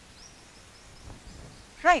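Quiet outdoor background with a few faint, short high-pitched chirps in the first second. A woman's voice says "Right" near the end.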